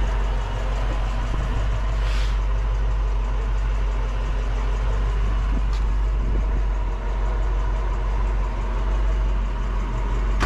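1965 Ford Mustang's 289 four-barrel V8 idling steadily through a Magnaflow dual exhaust, an even low rumble with no change in speed.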